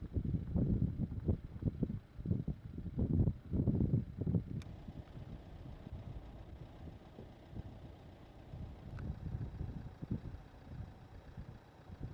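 Wind gusting across the microphone in irregular low gusts, strong for the first four or five seconds, then easing to a lighter, steadier rush.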